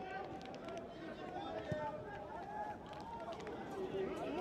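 Football pitch ambience with faint, scattered shouts and calls from players and spectators over a steady low background hum.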